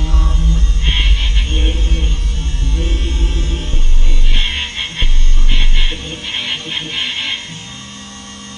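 Loud improvised drone music: a deep bass drone overlaid with stuttering bursts of high noise, about a second in and again from about four to seven seconds. Near the end it drops to a quieter, steady hum.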